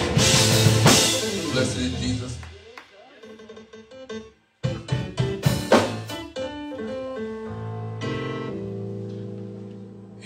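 Church band music on drum kit and keyboard. It is full for the first two seconds, then thins out and cuts out briefly about four and a half seconds in. It comes back with drum hits and long held keyboard chords that fade toward the end.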